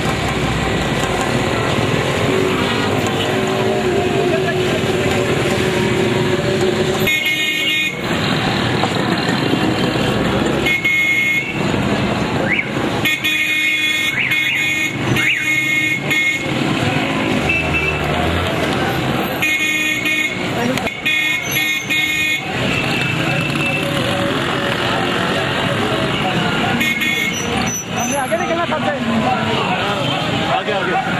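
Busy street traffic of motorcycles and cars, with vehicle horns honking in several clusters of short blasts over a steady bed of engine noise and people's voices.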